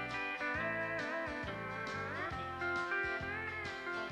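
Emmons pedal steel guitar playing a country instrumental break, its sustained notes bending and sliding, with a clear upward slide about two seconds in. An electric bass plucks a steady line underneath.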